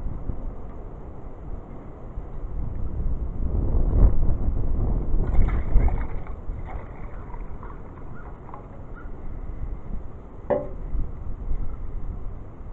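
Gusty wind buffeting the microphone, loudest about four to six seconds in, with hot water poured from a pot splashing into an empty tin can around the middle.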